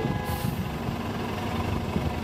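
Street traffic: a heavy vehicle's engine running with a steady low rumble, and a brief high hiss about a quarter second in.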